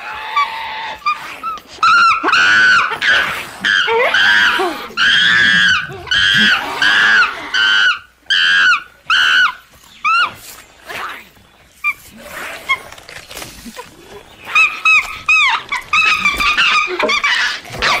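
Monkey-men creature vocalizations built from primate calls: a rapid string of high-pitched, arching screeching calls starting about two seconds in, dying down, then breaking out again near the end.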